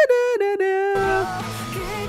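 Rock song from the music video: a female voice holds a falling falsetto note over sparse backing, then the full band comes in with heavy guitar about a second in.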